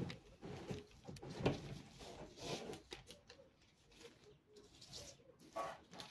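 Faint, irregular handling noises: a tape measure and a metal ruler shifted and set down on sheets of brown pattern paper, with soft rustles and light knocks.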